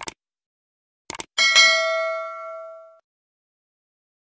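Subscribe-button animation sound effects: a short click at the start, a quick double click just after a second in, then a notification-bell ding that rings out and fades by about three seconds in.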